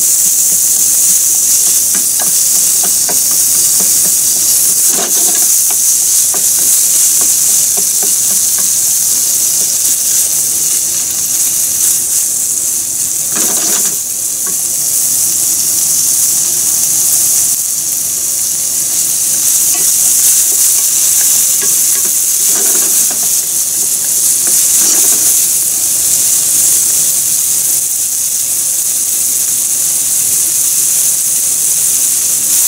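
Ground beef and gyoza filling sizzling steadily in hot oil in a frying pan, with a few strokes of a wooden spatula stirring and scraping through it.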